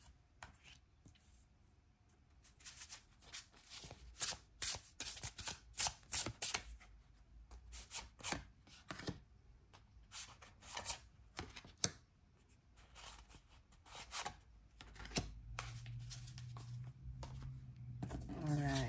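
A tarot deck being shuffled by hand: a long run of quick, irregular card slaps and taps, followed by cards being laid down on a wooden table. A faint low hum comes in near the end.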